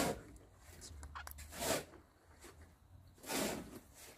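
Quiet mouth noises of a man chewing a bite of boiled snail meat, with faint clicks a little over a second in and two short puffs of breath, one just before halfway and one near the end.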